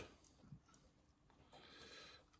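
Near silence: room tone, with one faint short sound about half a second in.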